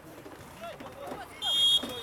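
A short, high whistle blast, under half a second long, about one and a half seconds in, over faint distant shouting from the pitch.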